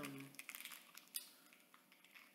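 Near silence: room tone with a few faint clicks, the clearest about a second in.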